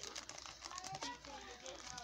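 Faint, irregular crinkling of foil trading-card pack wrappers as hands handle and spread out a row of sealed packs.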